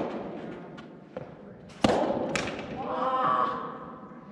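Soft tennis rally: sharp hits of rackets on the rubber ball echo in a large indoor hall, one at the start and the loudest just under two seconds in, with a lighter knock in between. About three seconds in a player gives a short shout.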